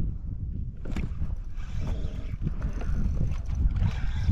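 Wind rumbling on the microphone and water lapping against a fishing kayak's hull, with many small knocks.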